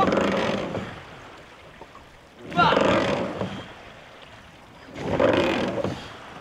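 Trainera crew rowing in rhythm: three strokes about two and a half seconds apart, each marked by a short shouted call and a rush of water and oar noise that fades before the next stroke.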